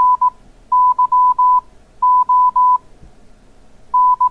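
Morse code (CW) tone at about 1 kHz sending the end of the call sign N9YO: the last dits of the 9, then Y (dah-dit-dah-dah) about a second in, then O (dah-dah-dah) about two seconds in. The elements are evenly timed and have clean on-off edges.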